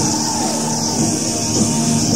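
Heavy metal band playing live: sustained electric guitar and bass notes over drums, with a steady wash of cymbals.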